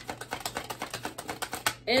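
A deck of tarot cards being shuffled by hand: a rapid run of soft card clicks, about ten a second, that stops shortly before the end.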